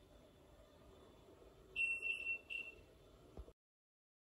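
Electronic beeping: a high, steady tone in about three short pulses about two seconds in, followed by a click, after which the sound cuts off abruptly.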